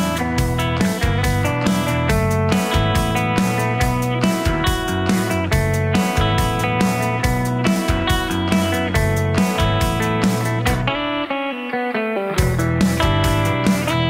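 Instrumental break of a light rock song: guitar over bass and a steady beat. The beat and bass drop out for about a second and a half near the end, then the full band comes back in.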